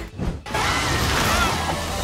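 Cartoon soundtrack: background music with a dense rush of sound effects that starts about half a second in.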